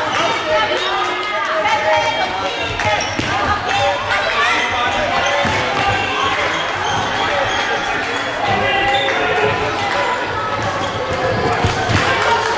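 Indoor youth football game in a sports hall: the ball being kicked and bouncing on the wooden floor and boards, with many voices of spectators and players calling and shouting over one another throughout.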